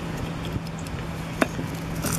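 A small hand trowel scraping and digging through loose soil, with one sharp click about a second and a half in.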